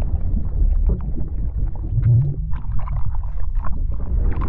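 Underwater-style sound effects for an animated logo intro: a deep, steady rumble with many short scattered bubbling and splashing blips over it.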